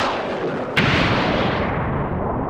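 Thunder-crack sound effects of lightning strikes: a sharp crack at the start and a louder one just under a second in, each followed by a falling, rumbling tail.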